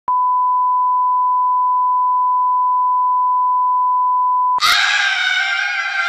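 A steady 1 kHz test-pattern tone, the kind broadcast with TV colour bars, cut off about four and a half seconds in by two women screaming in excitement, a high, wavering scream that carries past the end.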